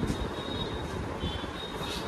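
Steady background noise with a faint, high-pitched whine held on one note.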